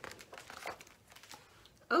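A page of a large hardcover picture book being turned, the paper rustling and crinkling in several uneven strokes.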